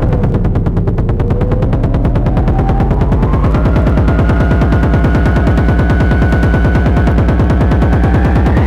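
Early-1990s electronic dance track: a rapid, even run of repeated hits over a heavy bass line, with a thin synth tone slowly rising in pitch and then holding.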